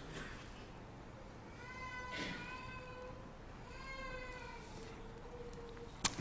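A faint, high-pitched, drawn-out wailing voice, heard twice; the second call glides slightly down and trails off near the end.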